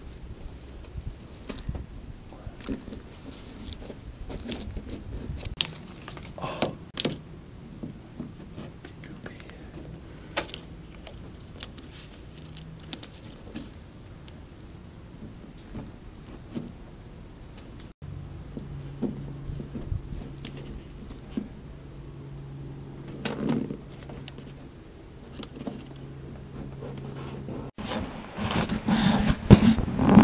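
Scattered small clicks, taps and rustles of gloved hands working a plastic syringe and masking tape against a fiberglass canoe hull while resin is injected into the hull's soft spot. A low steady hum comes in about halfway through, and the sound turns louder near the end.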